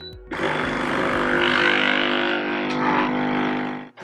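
Wonderchef Regalia capsule coffee machine's pump running as it brews a lungo: a steady hum with a hiss, starting just after the button press and cutting off suddenly just before the end.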